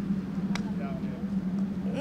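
A single sharp click of a putter striking a minigolf ball about half a second in, over a steady low hum.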